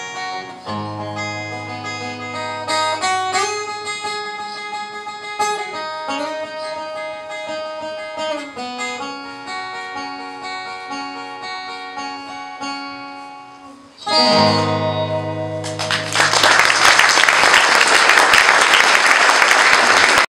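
Acoustic guitar playing the instrumental close of a slow folk song, single notes and chords ringing. About fourteen seconds in, a final strummed chord rings out, and then audience applause comes in near the end.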